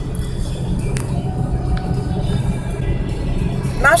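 Steady low drone of engine and tyres heard inside a moving car's cabin, with a single click about a second in.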